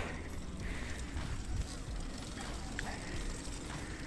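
Wind buffeting a phone's microphone over the rumble of a road bicycle rolling on asphalt.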